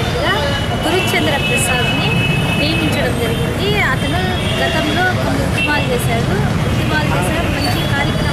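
A woman talking over a constant rumble of road traffic.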